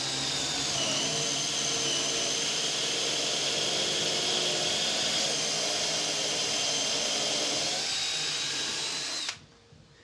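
An electric power tool's motor running with a steady high whine, dropping slightly in pitch about a second in, shifting again near eight seconds, and cutting off abruptly just after nine seconds.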